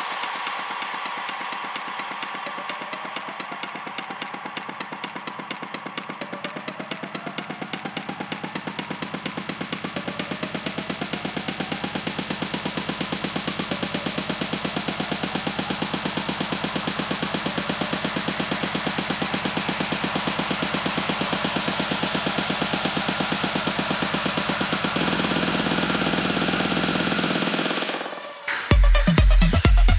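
Electronic dance music build-up: a rapid, steady snare roll with the deep bass taken out, over repeated rising synth glides and a bright noise sweep that opens up steadily, growing louder throughout. A low pulse comes in a few seconds before the end.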